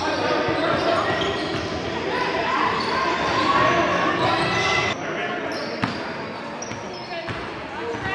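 Indoor basketball game sounds in an echoing gym: players' voices calling out over the play, with the ball bouncing on the hardwood floor. The voices fall away somewhat about five seconds in, and a single sharp knock follows about a second later.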